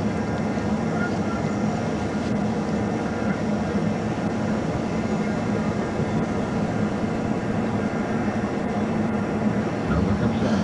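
Steady, unchanging rumble of an idling vehicle, with a low hum.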